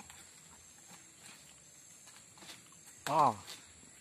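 Quiet outdoor background with faint ticks, then about three seconds in one short, loud vocal call that drops steeply in pitch.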